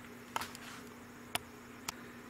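Faint steady low hum, like an appliance or electrical buzz, with three short, faint clicks spread through it.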